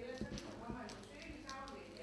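Indistinct chatter of several voices in a room, with scattered knocks and sharp clicks.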